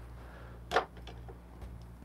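A single short knock about three quarters of a second in, as a Tricklet brewer is set down onto a Kinto glass coffee server, over a faint steady hum.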